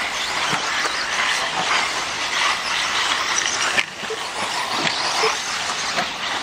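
4WD off-road RC buggies racing on a dirt track: a restless, hissing mix of small drivetrain whine and tyres on dirt, with a brief drop about four seconds in.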